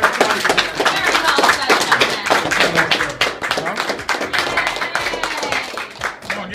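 A small group clapping in a room, with voices and a laugh over the claps.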